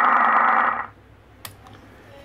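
A radio transceiver's loudspeaker hisses loudly with receiver static, the sign that its audio output stage works again after the blown TA7222AP audio amplifier was replaced. The hiss cuts off suddenly about a second in, and a single click follows.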